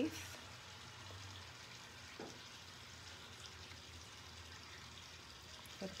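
Faint, light scratching of a pencil writing on box turtle eggshells, over a low steady room hum.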